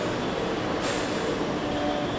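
Steady rumbling background noise with no speech, with a short hiss about a second in.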